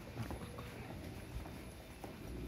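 Footsteps on a concrete station platform: a few faint, uneven steps over the low hum of a stopped electric train standing alongside.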